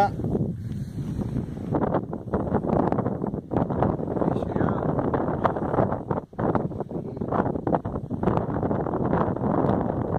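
Strong gusting wind buffeting the camera microphone, rising and falling, with a short lull about six seconds in.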